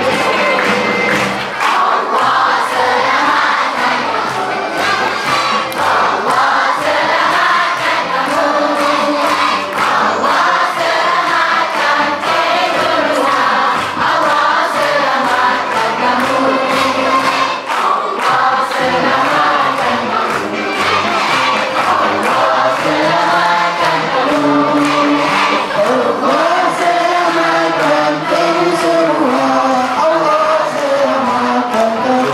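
A crowd of people singing together as a choir, with hand clapping.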